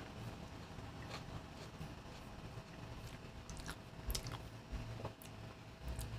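Faint chewing of a soft apple fritter doughnut, with a few scattered small mouth clicks.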